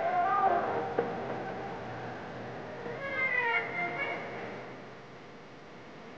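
Two drawn-out, meow-like cries that glide in pitch: one at the start and a second about three seconds in. A single click comes about a second in, and the sound fades away near the end.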